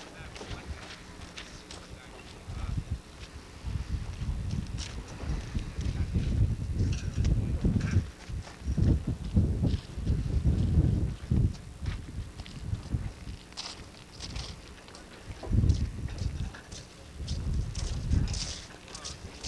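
Wind buffeting the microphone in irregular low gusts, strongest around the middle and again near the end, with scattered light clicks and knocks.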